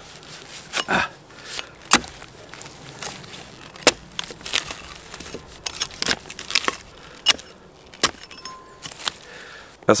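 A thin-bladed Rinaldi axe chopping into the end of a birch log to split it: a series of sharp, dry wooden chops at uneven intervals, roughly one every second or two. The birch splits stringy, and a long slab of it comes away.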